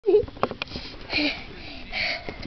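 A young child's brief high voice at the start, then a couple of light clicks and two breathy puffs of air.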